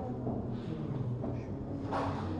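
Faint, indistinct voice at a low level, with a little room noise.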